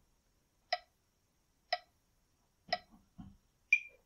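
Metronome ticking about once a second, each tick a short pitched click. Near the end a differently pitched accented beat sounds, marking the sixth beat, where the breath switches from out to in.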